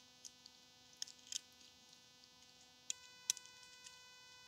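Light metallic clicks of thin titanium pot-stand plates being slid and seated into each other's slots: a few small clicks about a second in and two sharper ones near the end. A faint steady electrical hum lies underneath.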